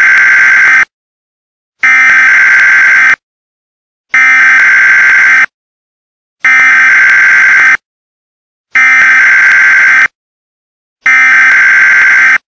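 Loud electronic alarm-clock buzzer, sounding in buzzes of just over a second each with a second of silence between, repeating evenly about every two and a quarter seconds.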